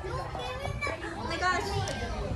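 Several young voices talking and calling out over one another, none of it clear words.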